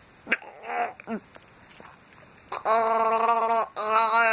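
A sharp tap, then two short squeaky vocal sounds that swoop in pitch. From about two and a half seconds in comes a loud, long held vocal tone with a slight waver, broken off just before the end: a voice making a wordless character noise, not speech.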